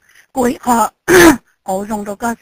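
Speech, with one short, loud vocal outburst about a second in.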